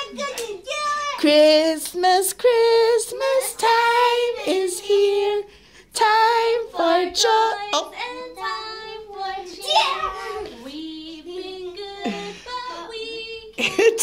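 A child singing a Christmas song, one voice holding drawn-out notes in phrases with two brief pauses for breath.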